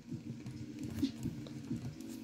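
Faint small clicks and scrapes of a plastic action figure being handled as a toy axe accessory is pushed into its gripping hand, with one slightly louder click about halfway.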